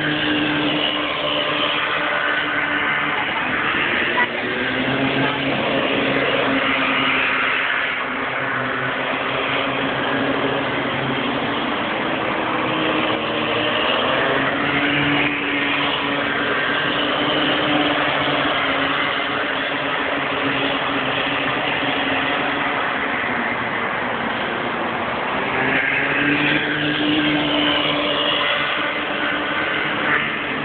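Small engines of Bambino-class go-karts racing round the circuit, several at once, their pitch rising and falling as they accelerate and back off through the corners.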